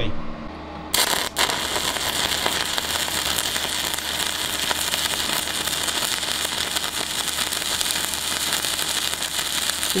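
Stick-welding arc (MMA) from a DECAPOWER XTRAMIG 200SYN inverter at 90 A with a 3 mm electrode on 2 mm wall steel tube: struck about a second in, faltering once just after, then a steady, even crackle as the bead is laid. The arc burns well and softly.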